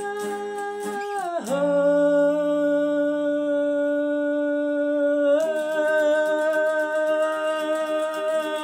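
A man singing long held notes over guitar chords. The voice slides down about a second and a half in and holds the lower note, then steps back up about five and a half seconds in, where the guitar strumming grows busier.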